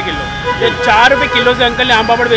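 Men talking over street background noise, with a steady high tone held under the voices.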